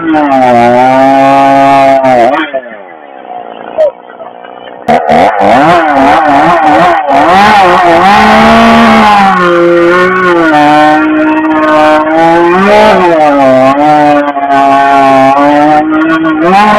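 Competition chainsaw engine revving hard, its pitch repeatedly rising and falling as the throttle is worked. About two and a half seconds in it drops away to a much quieter sound, then comes back suddenly at full revs about five seconds in and keeps revving up and down.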